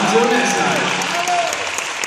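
Audience applauding, with cheering voices rising and falling over the clapping.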